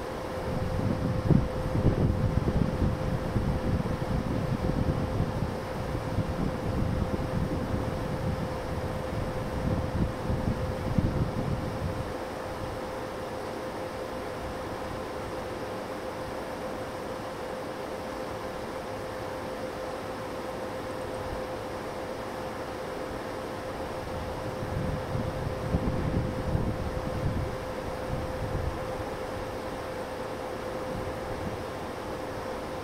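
Wind buffeting the microphone in irregular low gusts, heavy through the first dozen seconds and again shortly before the end, over a steady hiss and a faint steady hum.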